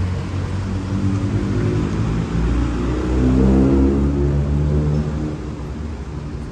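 Street traffic: car engines running at low speed close by, with one car's engine swelling louder a little past the middle as it pulls through, then easing off.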